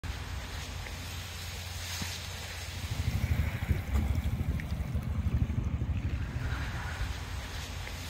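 Wind buffeting the microphone in irregular gusts, heavier from about three seconds in, over a faint outdoor hush.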